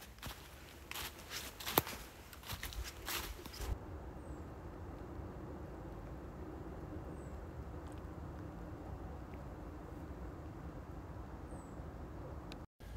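Footsteps crunching through dry fallen leaves on a steep trail, irregular steps with one sharper crack a couple of seconds in. About four seconds in, this stops abruptly and gives way to a steady faint outdoor hiss.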